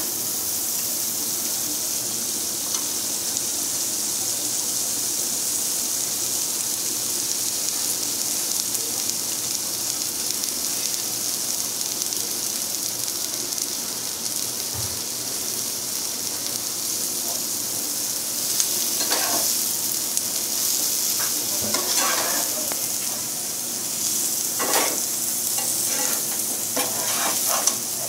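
Spice masala sizzling steadily in hot oil in a non-stick frying pan. In the second half, cluster beans are in the pan and a spatula stirs them through the masala in several short scraping strokes over the sizzle.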